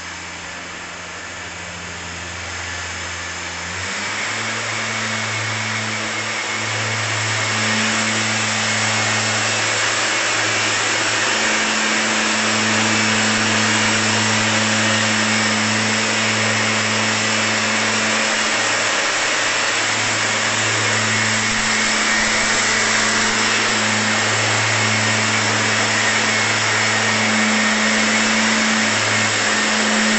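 STIHL backpack mist blower's two-stroke engine running with a steady rush of blown air. Its pitch steps up about four seconds in and it grows louder over the first several seconds, then holds steady at high speed.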